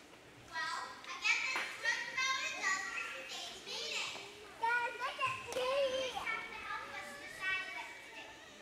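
A young child speaking lines into a microphone in short phrases with brief pauses. The words are unclear.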